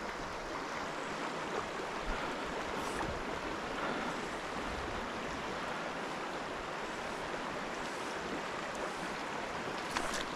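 Clear mountain stream running over a rocky bed in a steady rush.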